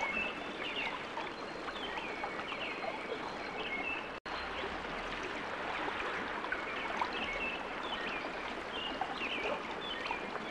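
Steady rush of flowing water, with short high bird chirps scattered through it. The sound cuts out for an instant about four seconds in, then resumes.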